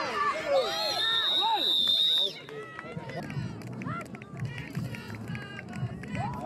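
Spectators shouting excitedly during a youth American football play, with a referee's whistle blown once, a steady shrill note of about a second and a half that cuts off abruptly. After it the voices drop to quieter crowd chatter.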